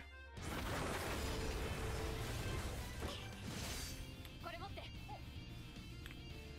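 Anime soundtrack: background music under a loud, noisy rush of a sound effect lasting about three and a half seconds, followed by a character's voice speaking in the last seconds.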